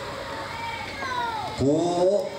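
High, thin wailing cries that glide down in pitch, three in a row, in the pause of a prayer; a man's voice begins speaking near the end.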